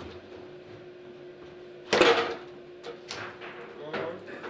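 Table football shot: a sharp loud bang about two seconds in as the ball is struck and hits the goal, scoring, followed by a few lighter clicks of ball and rods.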